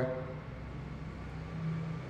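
Steady low hum with faint even background noise: room tone, with no other sound.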